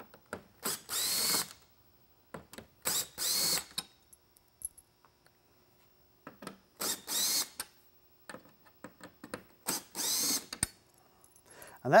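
Cordless drill-driver backing out four screws from a lightbar's aluminum top: four short bursts of motor whine, each under a second and rising in pitch as the motor spins up, spaced about three seconds apart, with small clicks in between.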